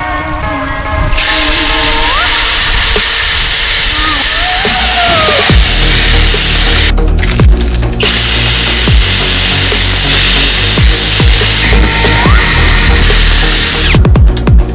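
Power drill boring into a ball of ice, a steady high whine with grinding hiss, running in two long stretches with a short stop at about seven seconds. Background music with a steady beat plays underneath.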